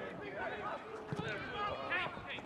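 Spectators on the touchline talking and calling out, with a short dull thud about halfway through.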